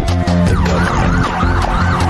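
A siren sound wailing rapidly up and down, starting about half a second in, over dark music with a steady heavy bass. A long falling tone ends just as the wail begins.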